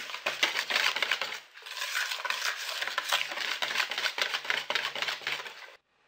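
Wire balloon whisk beating a thick butter-sugar-egg batter in a bowl by hand, the wires clicking and scraping against the bowl in quick strokes. The whisking pauses briefly about a second and a half in and cuts off abruptly just before the end.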